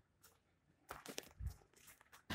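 Faint scuffing and crunching footsteps on paving, a short cluster of them about a second in, over near silence.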